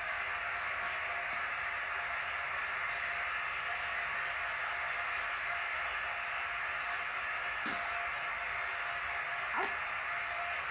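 Steady hiss like radio static, with a faint constant hum underneath; two brief faint sounds come near the end.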